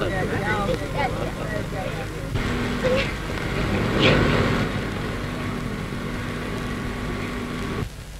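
Old mono film soundtrack: indistinct voices in the first couple of seconds, then a single steady low tone held for about five seconds, all over a constant hiss and low rumble.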